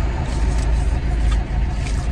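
Steady low rumble of a car heard from inside the cabin, with a few faint crinkles of plastic face-mask sachets being handled.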